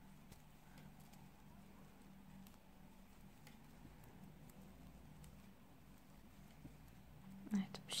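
Faint, scattered light clicks of metal knitting needles as stitches are knitted two together and bound off, over a low steady hum.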